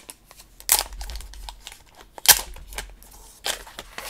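Protective plastic film being peeled off a mini PC's case, crackling and ripping in two louder pulls about a second apart, with softer rustling of the film between.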